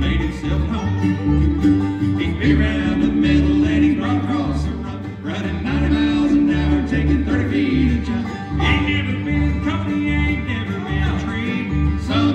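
Bluegrass band playing an instrumental break, with fiddle carrying long bowed, sliding notes over banjo, guitar and mandolin. An upright bass thumps out a steady beat underneath.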